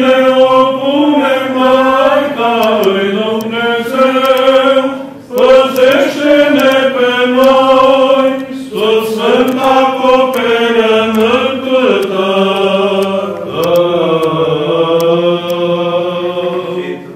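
Male Orthodox clergy chanting a Byzantine-style church hymn, sung in long held phrases with two short breaks for breath.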